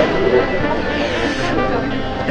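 Airport terminal background: a steady hum with indistinct voices of people around.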